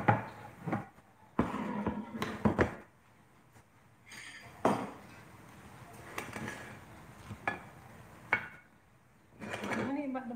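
Dishes being handled on a countertop: a serving platter set down and a small ramekin moved onto it. The sound is a series of separate knocks and clinks with a short stretch of scraping and handling.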